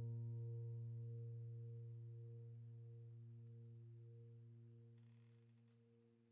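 The last low chord of the background music holds and slowly fades away to silence. A few faint ticks come near the end.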